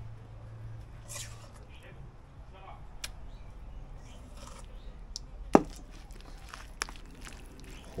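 A metal spoon scraping kimchi paste from a stainless steel bowl onto fish in a plastic container and stirring it: quiet wet scrapes and light taps, with a few sharp clicks of the spoon against the dish, the loudest about five and a half seconds in.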